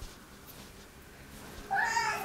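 A cat meowing once near the end, a high call that falls in pitch as it trails off, after a quiet stretch.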